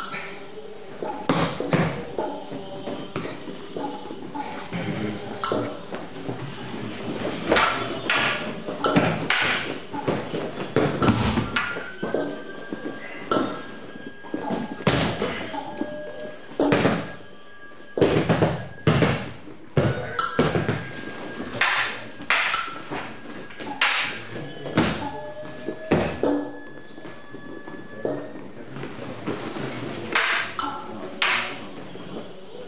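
Irregular thuds and knocks from martial-arts partners practising throws and wooden staff and sword techniques on a matted floor.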